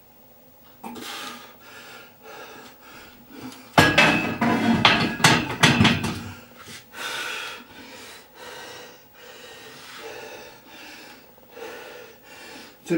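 A loaded 88 kg barbell is set back onto the hooks of a squat rack about four seconds in, with a heavy metal clank and a rattle of the iron plates over the next two seconds. Around it come hard, gasping breaths from the lifter after a set of squats.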